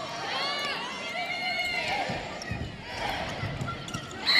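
Volleyball rally sounds over arena crowd noise: two drawn-out high-pitched sounds in the first half, then a few dull thuds.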